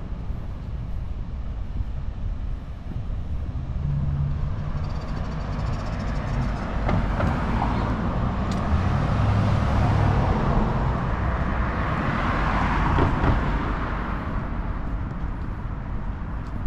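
A car driving past on the street: its tyre and engine noise swells over several seconds, is loudest about three-quarters of the way through, then fades away.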